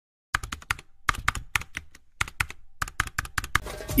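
Typing sound effect: about two dozen quick keystroke clicks in four short bursts, starting about a third of a second in.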